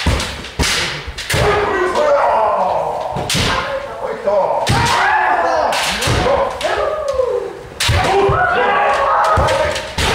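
Kendo sparring: several fencers' drawn-out kiai shouts overlapping, with repeated sharp cracks of bamboo shinai striking armour and thuds of stamping feet on the wooden dojo floor.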